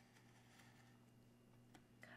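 Near silence: room tone with a faint steady hum and one faint tick near the end.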